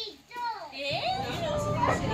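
Voices of children and adults, with one drawn-out exclamation about half a second in; steady low background noise rises sharply about a second in.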